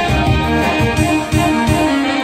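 A band playing loud music, an instrumental passage with no singing.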